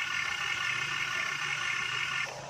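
Steady electric motor whine from an RC Komatsu PC210-10 excavator model working its boom and arm, with a low steady hum underneath.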